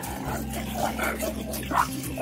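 A series of short animal calls, an added sound effect, over steady background music.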